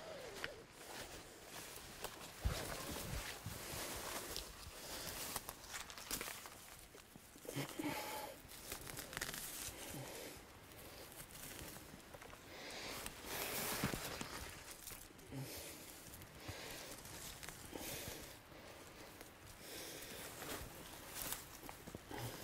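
Faint, irregular rustling and crackling of a person pushing through spruce branches and undergrowth and pulling moss up from the forest floor.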